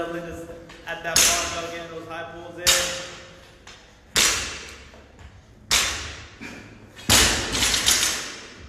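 Loaded barbell set down on the gym floor between high-pull reps: five heavy thuds about a second and a half apart, each with a short ring-out of the plates and room.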